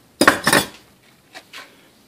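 Metal clinking as pliers set a cast zinc ring blank down on a steel plate: a short clatter of a couple of strikes about a quarter second in, then two faint clicks about a second later.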